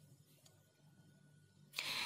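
Near silence, with a few faint ticks as the needle and seed beads are handled. Near the end comes a short breathy rush, an intake of breath just before speaking.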